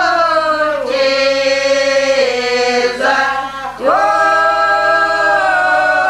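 A village folk group singing a traditional Russian song unaccompanied, several voices together in long, held notes. The voices break off briefly and a new phrase starts about four seconds in.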